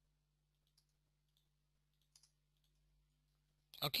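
A few faint, scattered clicks of computer keyboard keys as text is typed into a form, over a faint steady hum. A man says "okay" at the very end.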